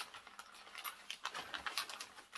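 Sheet of white wrapping paper rustling and crinkling in irregular small crackles as a wrapped ceramic figurine is unwrapped.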